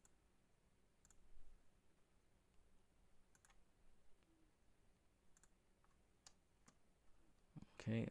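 Faint computer mouse clicks, a handful of single clicks scattered over near silence, with a voice starting near the end.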